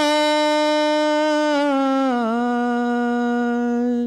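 Unaccompanied man's voice chanting one long held note into a microphone, stepping down to a lower pitch about two seconds in and held until just before the end.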